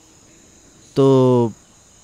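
Crickets chirping steadily in the background, a constant faint high-pitched trill, with a man's single drawn-out spoken word about a second in.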